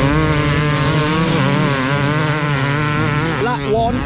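Several enduro dirt bike engines running at race pace, the revs wavering up and down as the bikes ride past. The engine sound falls away near the end as a voice starts.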